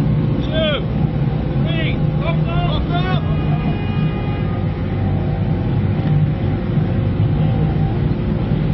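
Outboard engine of an RNLI inflatable inshore lifeboat running steadily and churning the water, holding the boat against its taut anchor line to check that the anchor holds. A run of short high calls sounds over it in the first three seconds.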